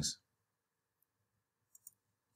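Two quick, faint computer-mouse clicks near the end, made while a line is being placed on a charting screen; otherwise near silence.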